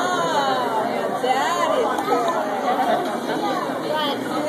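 Several people talking at once: indistinct, overlapping chatter with no words standing out.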